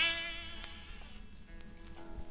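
A guitar chord struck once rings out and fades away, its notes held steady, with a couple of faint plucks before the strumming comes back.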